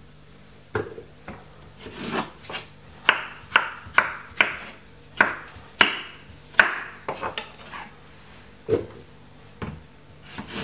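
Kitchen knife chopping cucumber on a wooden cutting board: a run of sharp cuts about two a second, with a few scattered strokes before and after.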